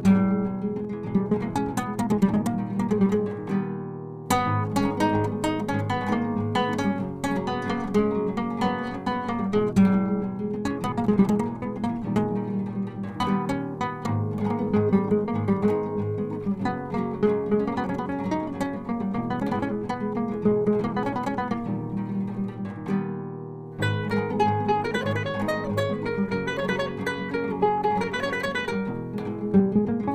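Acoustic guitar playing a flamenco-style improvisation: quick runs of plucked notes and chords, broken by two short pauses where the notes die away, one early and one about three-quarters through.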